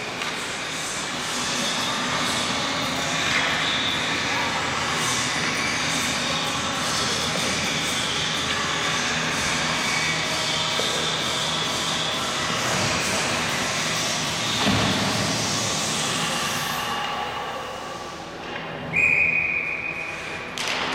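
Ice hockey game sounds in a large arena: players' and spectators' voices, and sticks and puck knocking on the ice and boards. A referee's whistle blows once, a steady shrill tone of about a second, near the end.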